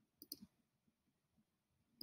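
Near silence, with two or three faint computer mouse clicks about a quarter of a second in.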